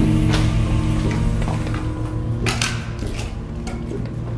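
Background music: held low notes, with a few sharp clicks or knocks, the loudest about two and a half seconds in.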